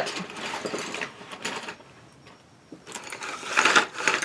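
Loose wooden colored pencils clicking and rattling against each other as they are handled after their box came open. There is a pause of about a second in the middle, then the clicking starts again.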